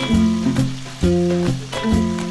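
Pork belly deep-frying in hot oil in a pot, a steady sizzle, under background music with a regular beat, which is the loudest sound.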